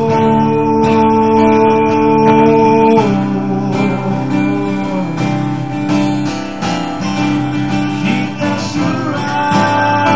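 Two acoustic guitars strummed together with a singing voice: the voice slides up into a long held note lasting about three seconds, the guitars carry on beneath, and the voice comes back with another held note near the end.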